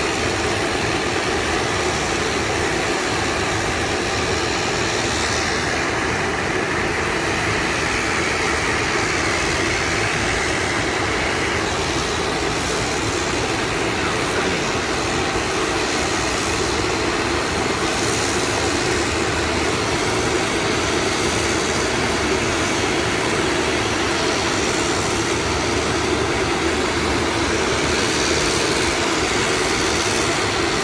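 Steady, loud engine and air noise of an aircraft heard from on board, unbroken as it flies past the cliffs and comes down towards the runway.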